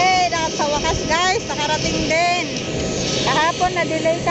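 Steady whine and rumble of aircraft engines running on an airport apron, with a constant tone throughout. A high-pitched voice chatters over it.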